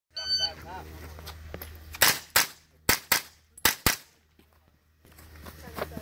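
A shot timer's electronic start beep, then six pistol shots fired in three quick pairs as a shooter runs a USPSA stage. The pairs come about two-thirds of a second apart, the shots within each pair a fraction of a second apart.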